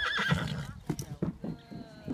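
A horse whinnies briefly at the start, followed by a few hollow knocks of hooves on a wooden platform as the palomino steps across and off it.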